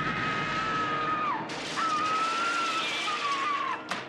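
A woman screaming in a film soundtrack: two long high shrieks, each falling in pitch as it trails off, over a loud hissing wash of sound effects.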